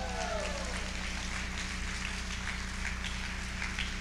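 A pause with no speech: the steady low hum of a hall's amplified sound system, with faint scattered small noises from the room.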